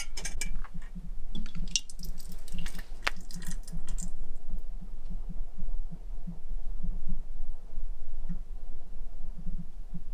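Glass jars clinking and tapping lightly against each other in the first few seconds as thick, stretchy långfil (fermented milk) is poured from one clip-top jar into another. A low, soft, irregular throbbing runs underneath throughout.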